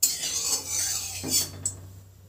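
A flat spatula scraping around the inside of a metal kadai, spreading a little mustard oil, then a light clink as it is lifted out.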